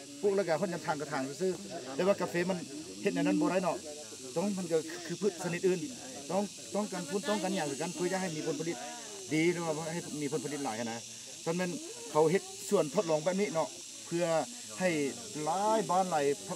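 A man talking continuously, in the rising and falling rhythm of explanation.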